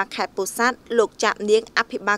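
Continuous speech: a voice speaking Khmer, with no other sound standing out.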